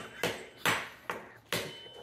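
Three sharp knocks or cracks, unevenly spaced, each dying away quickly.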